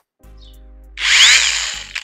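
Bosch GWS 180-LI 18-volt cordless angle grinder run briefly with no load, for just under a second, its whine rising and then falling away as it stops.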